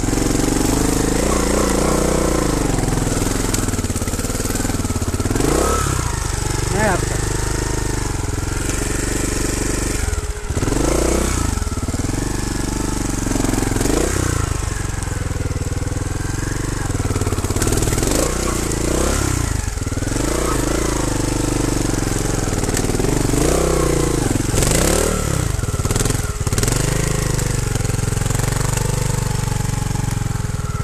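Trials motorcycle engine running at low revs with repeated short throttle blips, each a quick rise and fall in pitch, as it is ridden slowly down a steep, rocky slope.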